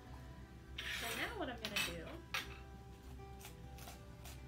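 Metal mason jar lid rings clinking and rattling against each other as they are handled, with a rustling flurry and several sharp clinks in the first half and a couple of lighter clinks near the end.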